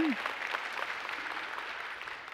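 Church congregation applauding, the clapping fading away.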